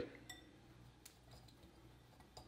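Near silence, with two faint clinks of a wire whisk against a glass mixing bowl as dry flour mix is whisked, the first with a short glassy ring.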